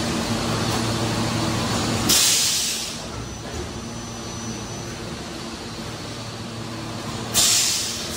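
PET preform injection moulding machine running with a steady hum, broken twice by sharp bursts of compressed-air hiss, about two seconds in and again near the end. The hum drops to a lower level after the first burst.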